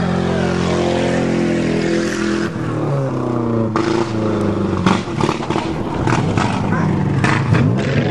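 Car engine running steadily, heard from close by inside a car; in the second half it changes pitch and is joined by a run of short knocks and rattles.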